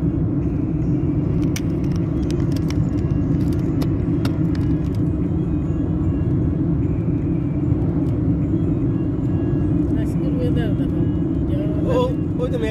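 Steady road and engine noise of a car driving at speed, heard from inside the cabin, with a few light clicks in the first few seconds.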